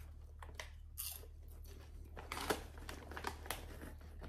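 Faint crunching and crackling as a mouthful of popcorn is chewed, with a few light crinkles of the plastic snack bag.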